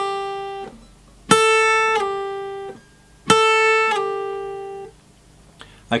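Steel-string acoustic guitar, low E string: a note picked at the 5th fret and slid down to the 3rd without picking again, a downward legato slide, played twice about two seconds apart. Each note drops a whole step quickly and cleanly, with no in-between note, about half a second after the pick, then rings and fades until it is stopped. The tail of an earlier slide steps down right at the start.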